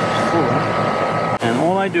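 Rooftop air-conditioning unit running with a steady whirring hum and a thin, constant high whine. A sharp click about one and a half seconds in breaks it.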